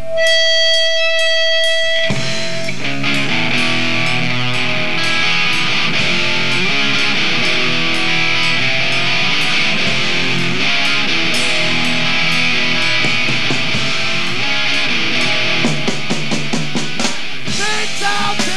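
Live punk rock band starting a song: a single held electric guitar tone rings alone for about two seconds, then drums and distorted guitars come in together, with cymbals played steadily over a fast beat.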